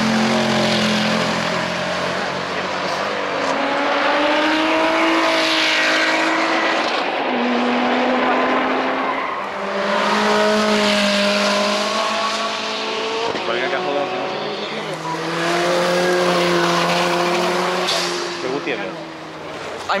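Supercars accelerating hard past one after another, among them a Mercedes C63 AMG Black Series and a Ferrari 458 Spider, both naturally aspirated V8s. The engine notes rise and drop in pitch as the cars work through their gears, in several separate passes.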